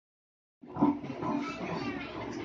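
A man's loud voice through a microphone and loudspeaker in a crowded room. It cuts in suddenly about half a second in, and its loudest moment comes just after.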